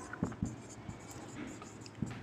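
Faint scratching of a pen writing, with a couple of light taps early on.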